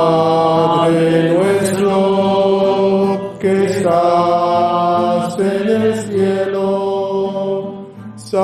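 Men's voices chanting a slow hymn in long held notes, in three phrases with short breaks between them.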